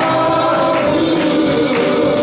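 Live worship band, with keyboard and electric guitar, accompanying a male lead singer while a congregation sings along.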